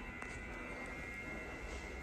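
Quiet room tone: a steady faint electrical hum with a thin high whine, and no distinct event.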